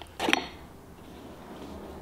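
A small cardboard box being opened to get a glass mason jar out: a brief scrape and clicks of cardboard about a quarter of a second in, then only faint room noise.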